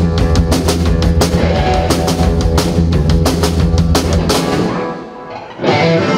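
Live rock band of electric guitars, electric bass and drum kit playing loud and driving. About four and a half seconds in, the bass and drums drop out for roughly a second, leaving only a quieter ringing. The full band comes back in near the end.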